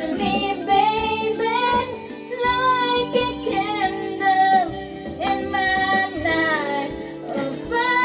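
A woman singing karaoke into a handheld microphone over a backing track.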